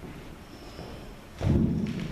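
A loud, dull thump about one and a half seconds in, over quiet room tone: handling noise on a handheld microphone.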